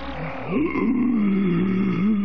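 A cartoon bulldog's low, gruff grumbling vocalization, starting about half a second in and running for nearly two seconds, its pitch wavering before dropping away at the end.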